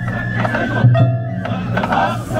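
Japanese festival float music: bamboo transverse flutes hold a melody of steady notes over a few taiko drum strikes.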